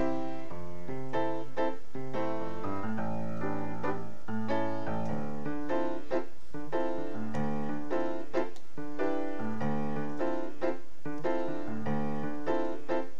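Piano played with both hands: a shuffle, with a steady bass line in the left hand under chords and melody in the right.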